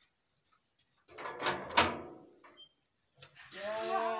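A door being opened: a rush of scraping noise with a sharp knock near the middle. Near the end, a drawn-out voice begins.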